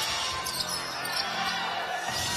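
A basketball being dribbled on the court floor over a steady wash of arena crowd noise.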